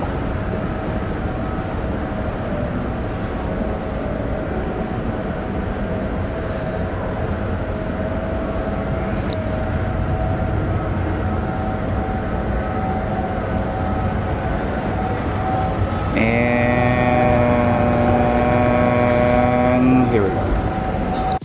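Mall escalator running: a steady mechanical drone with a faint held hum. About sixteen seconds in, a louder whine of several steady tones comes in and holds as the top landing nears.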